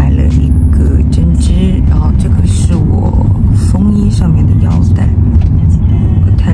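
Steady low rumble inside a moving car's cabin, with a woman talking softly over it.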